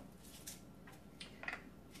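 A few faint, short clicks from a small plastic container being handled and its white cap taken off, over quiet room tone.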